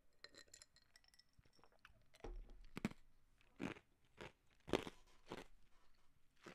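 A man drinking from a glass close to the microphone, faint: light clinks of the glass at first, then a run of short gulps about half a second apart.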